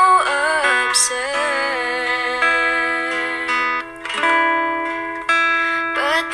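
Slow love-song ballad: a singing voice over guitar accompaniment, the sung line ending about two seconds in, followed by long held notes and chords.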